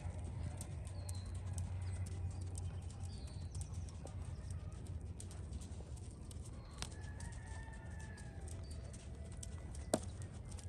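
Faint, soft hoofbeats of a Tennessee Walking Horse walking on arena sand, under a low steady rumble, with scattered bird chirps and a distant rooster crow about seven seconds in.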